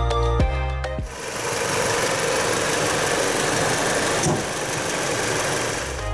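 Background music cuts off about a second in, giving way to the Jeep Compass's 2.4-litre Dual VVT four-cylinder engine idling, heard close up in the engine bay as a steady, even noise.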